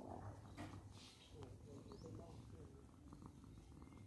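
Domestic cat purring faintly and steadily while being stroked on the head and chin.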